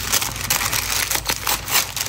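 Packaging crinkling and rustling as it is handled and opened by hand, a dense run of small crackles.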